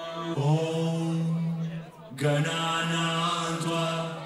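Dance-music track in a breakdown with no kick drum: a long held vocal note, broken by a short gap about two seconds in and then held again.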